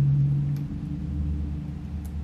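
A low, steady rumbling hum whose pitch drops about half a second in.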